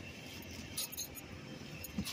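Faint rustling of plastic trash bags being pushed aside by hand in a dumpster, with a few light clicks about a second in and near the end.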